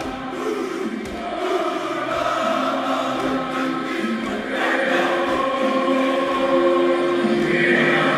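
Many voices singing together in long held notes, getting louder about halfway through.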